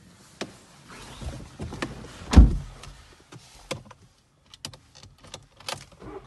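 A series of short clicks and knocks inside a car cabin, with one loud, deep thump about two and a half seconds in.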